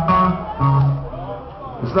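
Electric guitar through the stage amps playing a few loose held notes between songs, heard from within the crowd in a large hall.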